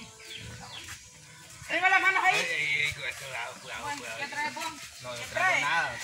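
People's voices talking and calling out, quiet at first, with a loud high-pitched stretch about two seconds in and voices again near the end.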